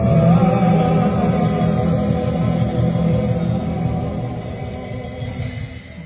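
Live band music at a rehearsal: a singer's voice over bass and sustained keyboard tones. The music fades away over the last couple of seconds.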